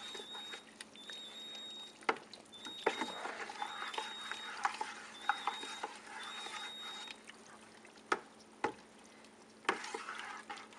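A thick, pulpy liquid ferment stirred by hand in a plastic bucket with a metal stirrer, sloshing wetly, with scattered sharp clicks where the stirrer knocks the bucket. The stirring aerates the brew to oxidise it.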